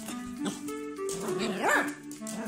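Miniature pinscher puppy giving a short high call that rises and falls in pitch near the end, over background music.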